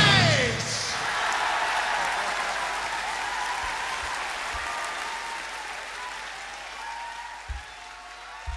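Concert audience applauding and cheering with scattered shouts after a live hard-rock song, the applause slowly fading. The band's last note falls away in the first half second, and there are two short low thumps near the end.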